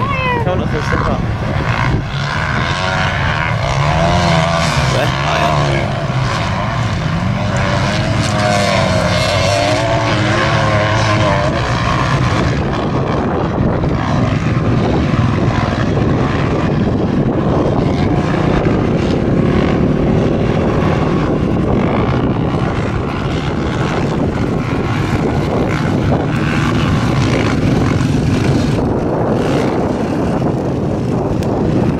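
Several motocross dirt bikes racing around a track, their engines revving up and down as the riders work through corners and jumps, with wind noise on the microphone.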